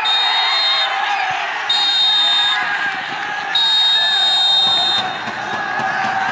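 A group of football players shouting and cheering in celebration, cut through by three long, shrill, high-pitched whistle-like blasts, the last one the longest.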